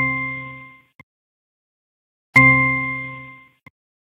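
A bell-like ding sound effect, twice: the first is already dying away as the clip begins, and a second rings out about two and a half seconds in and fades over about a second. Each ding is the cue for an answer word being filled into the exercise on screen.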